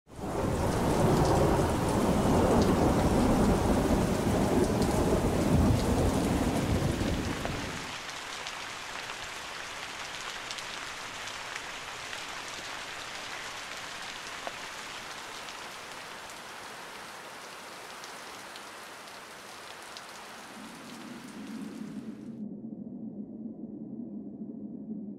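Steady heavy rain with rolling thunder, the thunder loud for the first eight seconds or so, then rain alone. Near the end the rain cuts off suddenly as a low synth tone comes in.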